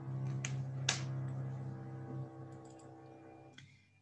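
A man's voice holding one long, low, steady hum that fades away after about three and a half seconds, with two sharp clicks about half a second apart near the start.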